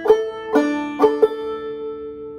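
Gold Tone five-string open-back banjo in sawmill tuning, capoed at the second fret, played clawhammer style: four plucked notes in slow succession, the last one left to ring out.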